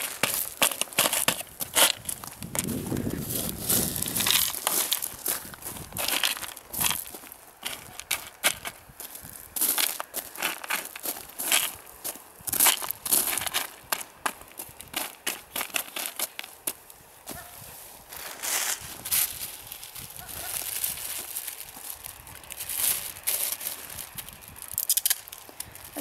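Irregular crunching and crackling as a large orange PVC sewer pipe is worked down over a smaller drain outlet standing in a gravel bed: plastic scraping on plastic and gravel shifting underfoot.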